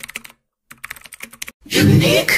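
Keyboard-typing sound effect: rapid clicks in two runs with a brief pause between them, accompanying on-screen text being typed out. A short louder sound comes near the end.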